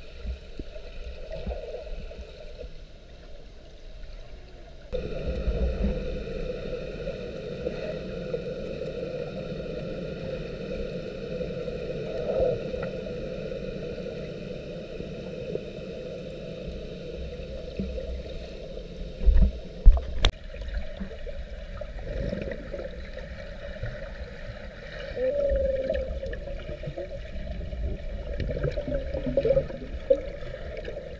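Muffled underwater sound of a swimming pool picked up by a GoPro in its waterproof housing: a steady low rumble and churning of water stirred by swimmers. It gets louder about five seconds in, with two heavy thumps about two-thirds of the way through.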